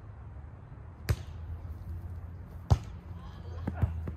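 Hands hitting a volleyball in play: a sharp hit about a second in, a louder one a second and a half later, then a few lighter contacts near the end.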